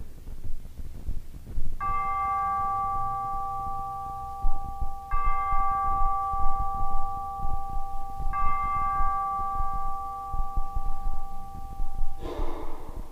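Consecration bell struck three times, about three seconds apart, during the elevation of the chalice at Mass. Each stroke rings with a clear, steady set of tones that sustains until the next.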